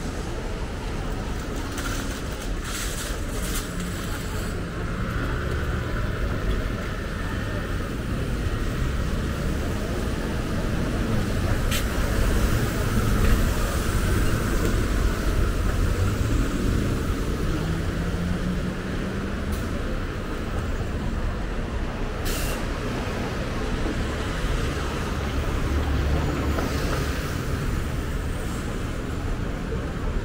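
Busy city street traffic on a wet road: a steady rumble of cars and buses passing. Partway through, an engine rises in pitch as it pulls away, and there are a few short, sharp hisses and clicks.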